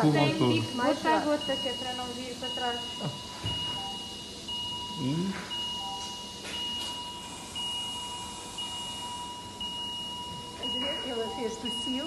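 Electronic alarm tones from medical monitoring equipment: a high tone broken by a short gap about once a second over a lower steady tone, with voices at the start and again near the end.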